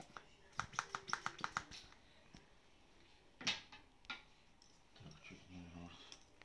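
Hand vacuum pump gun being squeezed on a plastic cupping cup, a quick run of about half a dozen clicks in under two seconds, topping up the suction in a cup that has weakened. Two sharper single clicks follow about half a second apart, around the middle.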